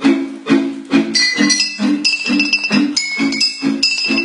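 Beer bottles struck to play a Christmas tune: clear, ringing glassy notes that join about a second in, over a steady accompaniment of strummed chords.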